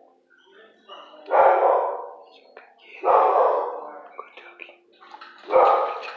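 Dog barking three times, about one and a half to two and a half seconds apart, each bark trailing off.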